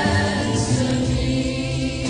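Gospel song sung by a choir, with sustained held notes.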